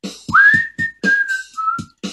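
A person whistles a short tune: a note slides up to a high pitch, then three notes step down. Short rhythmic percussive strokes keep a steady beat underneath.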